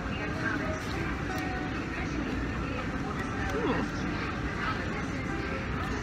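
Airport terminal background: a steady hum with distant voices and faint music.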